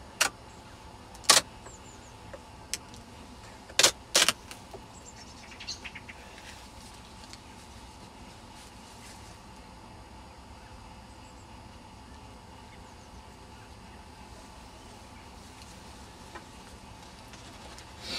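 Hive tool prising a wire queen excluder off the top of a beehive's brood box: four sharp cracks in the first few seconds as it comes loose, with a few lighter clicks. After that only faint steady background.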